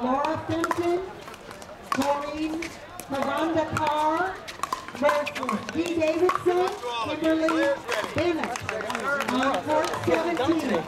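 A voice talking over a public-address system, the words unclear, with sharp pops of pickleball paddles hitting the plastic ball now and then.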